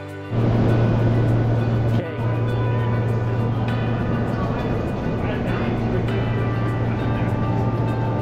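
Background music with loud ambient sound of a commuter rail train mixed in: a steady low hum and noisy rumble that comes in suddenly just after the start, dips briefly about two seconds in, then carries on.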